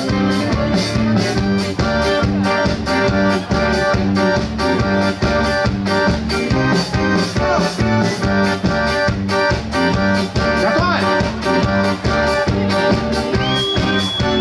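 Live pop-rock band playing an instrumental passage of the song through the stage sound system: a drum kit keeps a steady beat of about two strokes a second under held chords and guitar.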